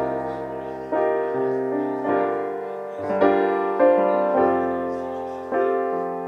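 Roland digital stage piano playing a slow ballad accompaniment: a chord struck about once a second, each one ringing and fading before the next.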